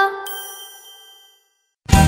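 The last bell-like chime of a short logo jingle rings out and fades, with a high shimmering chime layered over it. After a moment of silence the song's backing music, with bass and a beat, starts just before the end.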